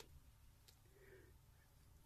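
Near silence: room tone, with one faint click about two-thirds of a second in.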